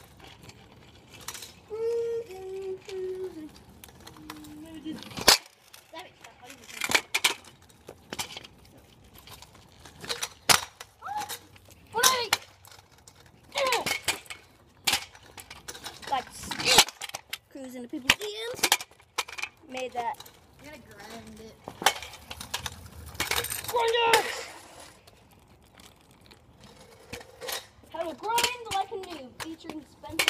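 Voices calling out in short, unclear bursts on and off, with two sharp knocks, one about five seconds in and one about seventeen seconds in.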